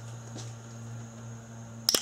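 A sharp double crack about two seconds in as the steel Torx bolt holding a camshaft position sensor breaks loose under heavy force on a T30 bit, over a steady low hum.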